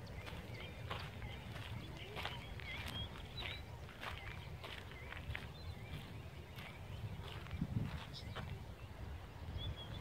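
Small birds chirping again and again in short wavy calls, over scattered light clicks and a steady low rumble on the microphone.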